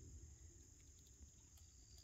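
Near silence: a faint, steady high-pitched insect chorus over a low rumble.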